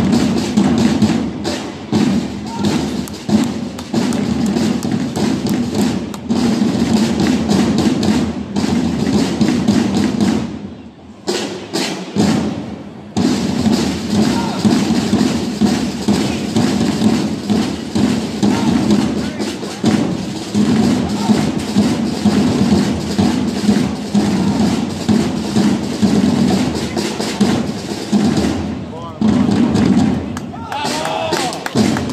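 Parade drums beating a dense, continuous rhythm accompanying a flag-throwing routine, with voices mixed in. The drumming dips briefly about eleven seconds in.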